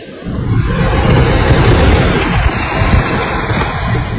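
Loud rushing, spraying water hitting a car's side window and pouring into the cabin, starting about a quarter second in.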